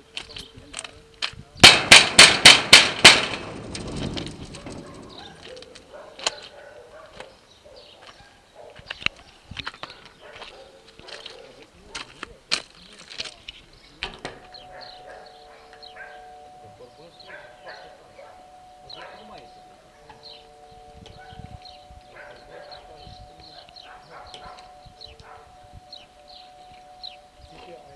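Six quick bangs on a corrugated sheet-metal gate, about four a second, each ringing loudly. About halfway through, a faint steady electric buzz starts as the gate's bell button is pressed, and it runs on.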